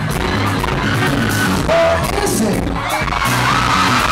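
Live band playing loudly, with electric guitars, bass and drums keeping a steady beat, recorded close up on a phone in a club. Crowd voices and a whooping shout rise over the music near the end.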